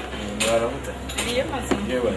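A man and a woman talking, exchanging greetings, with a few sharp clinks among the speech.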